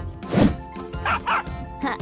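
An excited cartoon puppy barking and yipping a few times, short and sharp, over background music.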